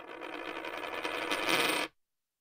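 A swell of hissy noise with faint ringing tones in it, growing louder and cutting off abruptly near the end.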